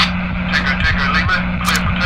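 Indistinct voices over a steady low rumble and a constant hum, with a short hiss near the end.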